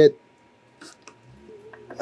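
A pause in speech with faint room tone and a low steady hum; shortly before the end, a few soft clicks as 3D-printed plastic test cubes are handled on a wooden workbench.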